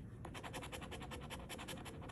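A coin scratching the coating off a scratch-off lottery ticket in quick, even back-and-forth strokes, starting about a quarter second in.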